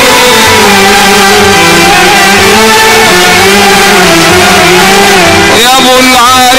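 Instrumental passage of Egyptian folk music from a small band of violin, kawala cane flute and keyboard: a held, slowly wavering melody over a steady low beat. Near the end a new line with strong vibrato comes in.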